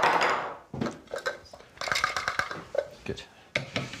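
Mostly people's voices and laughter, opening with a short rush of noise, with a few light knocks and clatters of kitchen equipment being handled.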